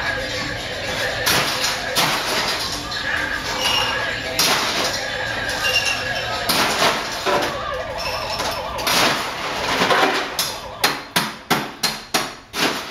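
Background voices and music in a bar room, then near the end a quick run of sharp knocks, about four a second, from bar tools being worked at a bartender's cart.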